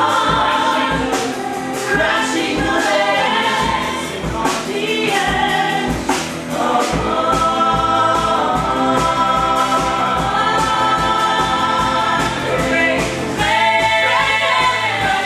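Musical theatre ensemble singing together in full chorus over a rock band accompaniment with a steady drum beat.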